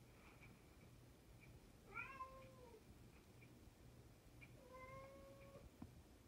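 A house cat meowing twice, faintly: a short call that rises and falls about two seconds in, then a longer, steadier call near the end.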